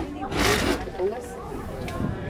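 Several people talking and exclaiming in the open air, with a brief loud rush of noise about half a second in.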